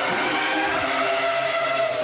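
A sports car driven hard, its engine note gliding up and down in pitch.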